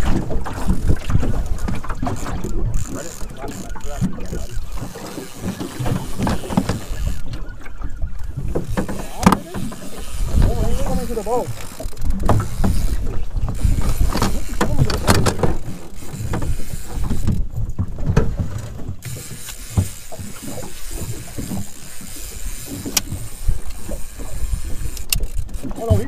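Wind buffeting the microphone and choppy water against a small aluminum boat's hull, a dense uneven low rumble, with a few short clicks scattered through it.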